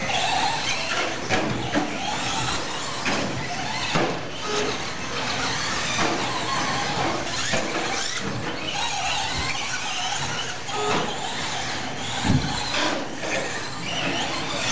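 1/10-scale two-wheel-drive short course RC trucks racing: the high-pitched whine of their motors and drivetrains rising and falling in pitch as they accelerate and brake, with scattered knocks from landings and bumps, the sharpest about twelve seconds in.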